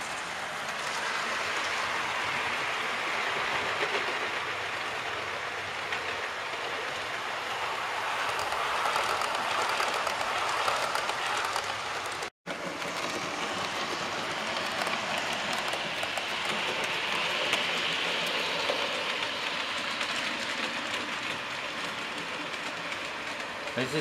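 Model trains running on the layout track: a steady whirr of small locomotive motors and wheels rolling on the rails. The sound drops out briefly about halfway through.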